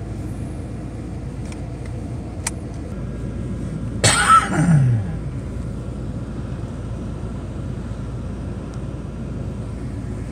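Steady low rumble of a car cabin with the engine running. A sharp click, fitting a seatbelt buckle latching, comes about two and a half seconds in, and a loud burst falling in pitch comes about four seconds in.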